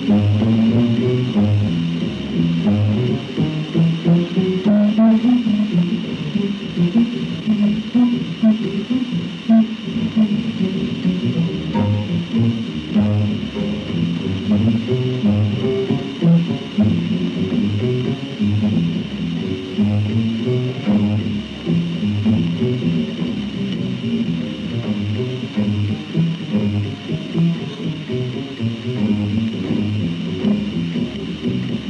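Double bass played pizzicato in a live jazz quartet recording: a run of plucked notes in the low register, carrying the music with little else on top.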